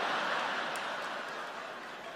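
A large audience laughing, loudest at the start and slowly dying down.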